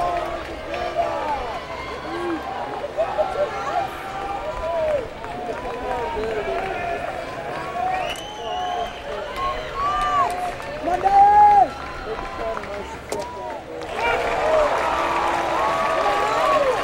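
Large ballpark crowd of many voices shouting and calling at once. The crowd grows louder about two seconds before the end as the pitch is delivered.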